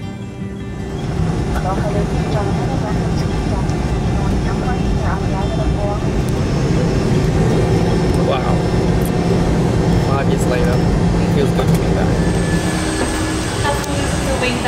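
Airliner cabin noise while taxiing: a steady engine hum and rush of air, with background music and indistinct voices over it.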